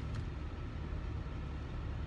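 Steady low rumble of a car's road and engine noise heard inside the cabin while driving.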